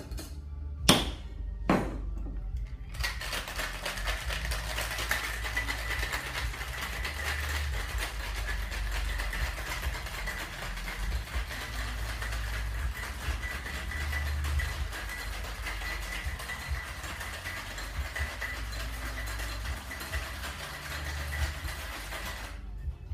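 Metal cocktail shaker: two sharp knocks as the shaker is closed, then about nineteen seconds of hard, fast shaking with ice rattling inside, a dense continuous rattle. Background music plays under it.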